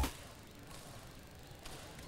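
Faint room tone of an indoor badminton hall with two soft taps from the court, the second, slightly louder one near the end.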